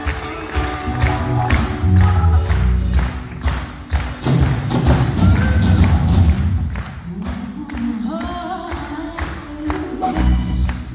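A live rock band playing, with drums and bass guitar prominent under sustained keyboard notes.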